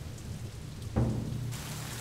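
Steady rain falling, with a low rumble that swells about a second in.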